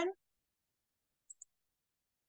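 The end of a spoken word, then near silence broken by two faint, quick clicks just over a second in: a computer mouse being double-clicked.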